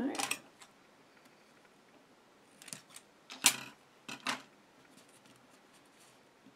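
Sticky tape being worked onto card: a rasp as a strip is pulled at the start, then three short crisp rips or snips, the sharpest about three and a half seconds in.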